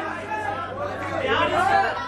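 Overlapping voices of audience members calling out answers at once in a large hall, a jumble of chatter rather than one clear speaker.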